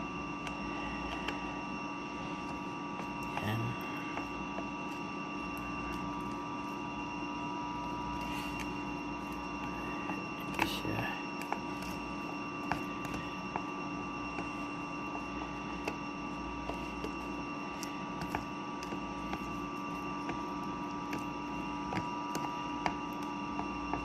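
A steady electrical hum throughout, with faint scattered clicks and scrapes of a metal spoon stirring thick rice batter in a plastic container, a little louder about ten seconds in.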